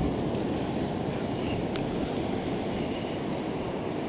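Steady low rumble of surf breaking on the reef, mixed with wind on the microphone.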